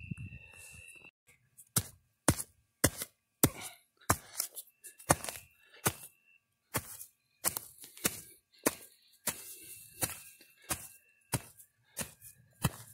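A short-handled digging tool chopping into soil, about two strikes a second, while digging out a metal detector target.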